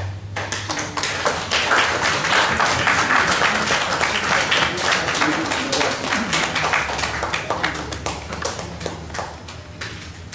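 Audience applauding with many separate hand claps, building over the first couple of seconds and dying away near the end.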